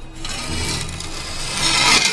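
A sword blade being drawn along a whetstone: one long, gritty scrape that builds steadily in loudness.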